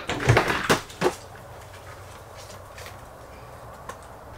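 A quick run of knocks and clicks in the first second, then a steady faint background hiss.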